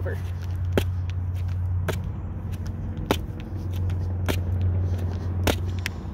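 A person's feet landing in a run of side-to-side fence hops: five sharp thuds, about one every 1.2 seconds, over a steady low rumble.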